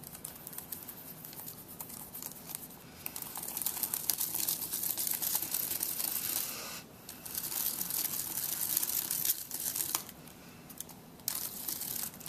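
Paper flower petals crinkling and rustling as they are curled inward with a stylus, loudest in the middle with a brief break about seven seconds in and a quieter stretch near the end.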